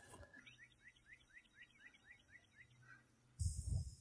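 A bird calling faintly: a quick series of about ten short upslurred notes, about four a second. Near the end a low rumble with hiss comes in.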